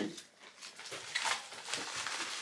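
Faint rustling and scraping of paper and a padded mailer being handled, in a few short bursts.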